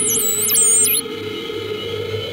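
Experimental analog electronic music played on self-built instruments: a steady drone under high, warbling pitch glides that swoop down and cut off suddenly about a second in.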